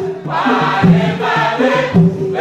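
A mixed choir of men and women singing a worship song in Tiv together, several voices holding and stepping between notes.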